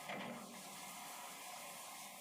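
Metal lathe running with a steel shaft spinning in the chuck against the cutting tool: a steady hissing machine noise, briefly louder just after the start.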